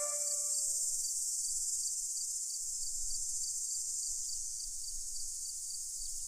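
The last notes of the music fade out in the first second. Then a steady high-pitched hiss continues with a faint, evenly repeating pulse.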